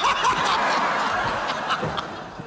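Loud burst of hearty laughter, a dense wash of several voices rather than one clear voice, fading away near the end.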